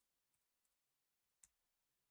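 Near silence with a few faint clicks from computer input, the clearest about one and a half seconds in.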